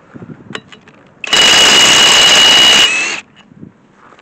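Small Einhell cordless impact wrench hammering on a van's wheel nut for about a second and a half, starting just over a second in, with a steady high whine over the rapid impacts. It breaks the wheel nut loose.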